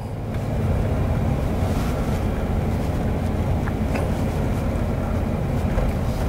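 Steady road noise inside a moving car's cabin: tyres and engine running at a slow cruise, with a couple of faint clicks near the middle.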